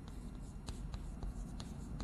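Chalk writing on a blackboard: a string of short scratches and taps at irregular intervals as characters are written.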